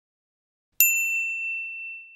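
A single bright "ding" sound effect that starts just under a second in and rings out, fading over about a second and a half. It is the check-mark chime marking an item as ticked off.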